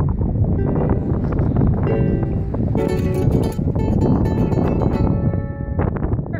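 Ukulele strumming chords, with wind buffeting the microphone throughout as a heavy low rumble.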